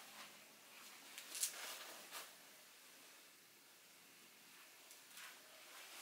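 Faint rustling of a Benarasi silk brocade sari being handled, a few brief soft rustles over near silence, the sharpest about a second and a half in.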